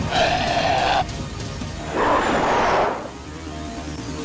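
A cartoon sound effect of a wolf-like creature snarling twice, once in the first second and again, longer and rougher, around the middle, over background music.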